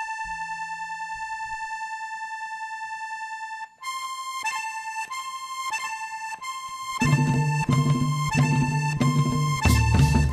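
Cumbia accordion intro: one long held note, then a choppy rhythmic phrase of short notes from just under halfway. Bass and percussion come in at about three-quarters of the way through, and the full band plays on.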